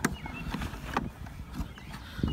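Plastic clicks and knocks from the spreader's EdgeGuard mechanism as its switch is flipped and the orange plastic deflector rotates to the back: one sharp click, then a couple of lighter knocks about half a second apart, over a low rumble.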